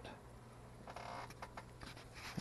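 Faint handling sounds: a soft scrape about a second in, then a few light clicks, as a small vial and bubble detector are set in place inside a ring, over a low steady hum.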